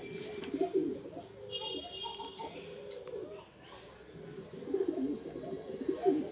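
Indian fantail pigeon cooing: repeated low coos that waver up and down in pitch, with a brief thin high-pitched tone about a second and a half in.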